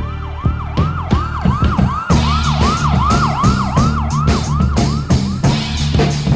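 A fast siren-style wail, rising and falling about two and a half times a second, over music with a bass line and drum beat; the wail stops about five and a half seconds in.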